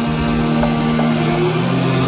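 Progressive house/trance music: held synth chords over a steady bass with a rising white-noise sweep building up toward a drop.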